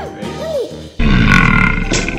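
A man's loud, rough, drawn-out disgusted "ewww", edited in as a comedy sound effect. It starts suddenly about halfway through, over background music.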